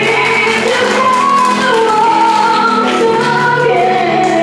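A girl singing a slow song live into a microphone over accompanying music, the melody moving in held notes.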